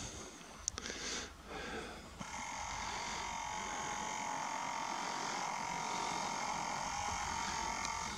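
Faint handling noise with a small click, then about two seconds in the compact camera's zoom motor (Nikon P900) starts a steady, high whine that lasts about six seconds as the lens zooms in.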